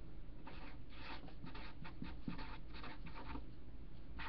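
Marker writing, a run of short scratchy strokes starting about half a second in and stopping shortly before the end.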